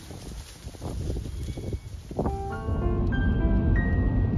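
Soft, irregular thudding and rustling of a herd of startled cattle running off across a grass paddock. A little over two seconds in, background music of held notes starts and becomes the loudest sound.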